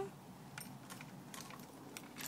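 Faint, scattered light clicks as hands handle a Husqvarna chainsaw's loose chain and bar.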